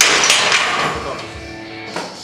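A loaded steel barbell knocks against the metal power rack: one sudden, loud metallic clank that rings on and fades away over about a second and a half.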